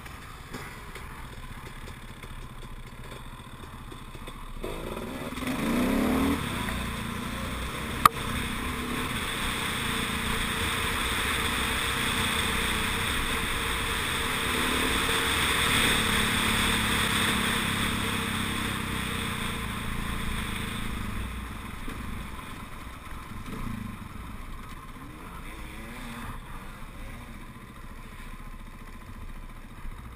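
Dirt bike engine running along a forest trail, its revs climbing sharply about five seconds in. A single sharp knock comes about eight seconds in, and a rush of noise, wind on the helmet-mounted camera, swells through the middle and then eases.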